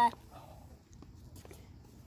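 A child's drawn-out hesitation ('um, the') trails off right at the start, then a pause of quiet outdoor background with a few faint clicks.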